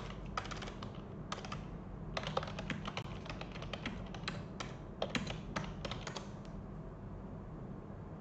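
Typing on a keyboard: quick, irregular runs of key clicks that stop about six and a half seconds in.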